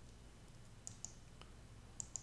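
Faint computer mouse clicks over near-silent room tone: two close together about a second in, and another at the end as a right-click menu opens.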